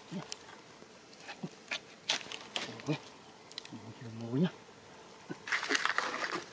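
Insect buzzing close by, broken by a few short, low vocal sounds, the longest about four seconds in with a pitch that rises and falls. Scattered light clicks and rustling run through it, heaviest near the end.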